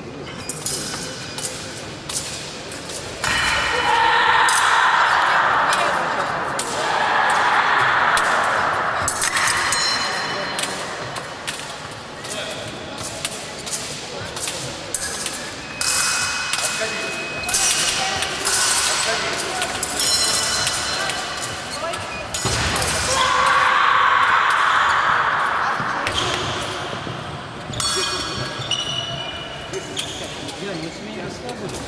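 Fencing bout in a sports hall: fencers' feet knocking and stamping on the wooden floor, with sharp metallic clicks of blade contact and voices at times.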